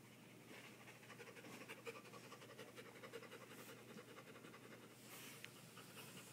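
A dog panting rapidly and faintly during play, in a quick even rhythm that fades out about five seconds in.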